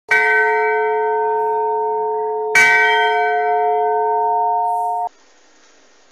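A deep bell struck twice, about two and a half seconds apart, each stroke ringing on in steady tones. The ringing is cut off abruptly about five seconds in, leaving only faint hiss.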